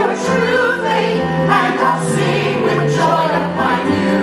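A woman singing a stage-musical solo, recorded live in the theatre, over a band or orchestra accompaniment.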